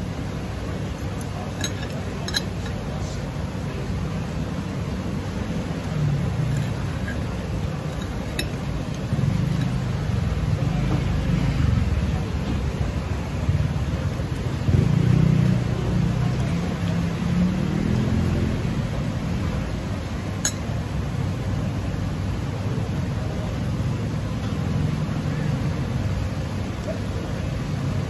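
A few sharp clinks of a metal fork and knife against a ceramic dinner plate while eating, over a steady low background rumble.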